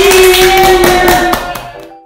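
Several people clapping their hands in quick, uneven claps over a long held note, the applause fading out near the end.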